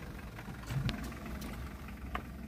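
A car engine idling: a faint, steady low rumble with a couple of light clicks over it.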